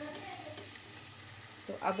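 Yogurt-marinated chicken sizzling softly and steadily on hot fried onion-tomato masala in a cooking pot.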